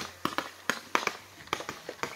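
Ground firework fountain crackling: a run of irregular, sharp pops and snaps as it burns down.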